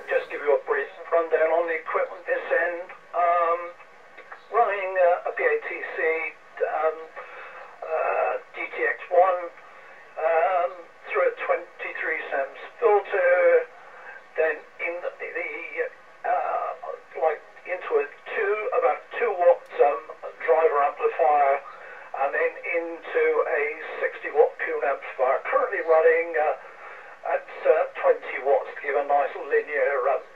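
A man talking over an amateur radio link, heard through a receiver's loudspeaker: a thin voice with the bass and treble cut off.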